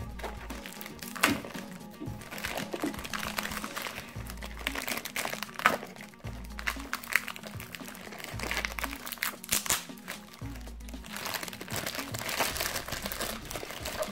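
Tough plastic packaging crinkling irregularly as hands struggle to pull it open. Background music with a deep bass pulse about every two seconds runs underneath.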